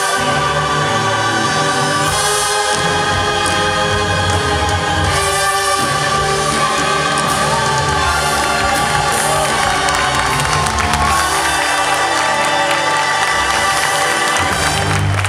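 Choir singing the final held chords of a song with musical accompaniment. Audience cheering and applause start to come in near the end as the music closes.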